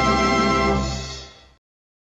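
Closing music: a held final chord that fades out and stops about a second and a half in.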